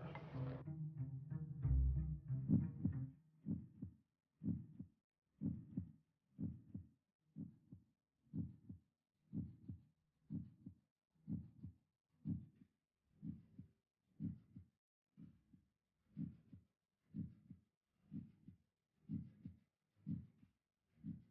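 Heartbeat sound effect: a steady low thump about once a second, laid under the cut for suspense, after faint sustained tones in the first three seconds.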